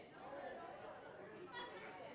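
Faint chatter of an audience, many voices talking at once with no one speaker standing out.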